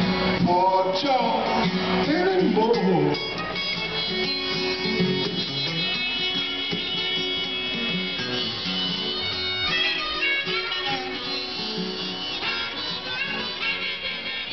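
Live acoustic blues: a flat-top acoustic guitar played with a harmonica blown from a neck rack, the harmonica bending notes in the first few seconds. It drops a little in loudness about three seconds in.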